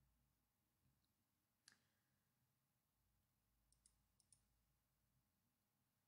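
Near silence: room tone, with a few very faint clicks, one about two seconds in and three close together near the middle.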